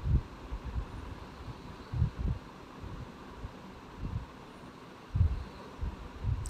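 A few dull low thumps, about five, spread over a faint steady hiss.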